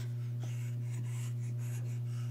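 A steady low electrical-sounding hum with faint soft rustles over it; no growl, laugh or voice.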